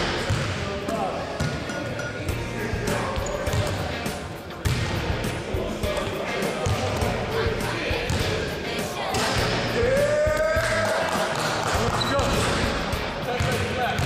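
Basketballs bouncing repeatedly on a sports hall floor as shots go up and rebounds are passed back, with background music and voices.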